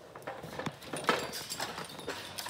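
Labrador retrievers moving about in a kennel run: a string of irregular light clicks and scuffles.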